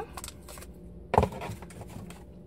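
Clicks and light rustling from a clear plastic eyeshadow palette case being handled as its protective covering is taken off, with one louder knock a little past a second in.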